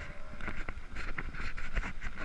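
Mountain bike rolling fast over a gravel track: steady tyre noise with frequent small rattles and knocks from the bike over the bumps, and wind on the microphone.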